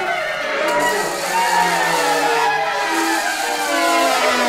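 Chamber ensemble of saxophones and Renaissance wind instruments playing slow, overlapping held notes that shift pitch about once a second.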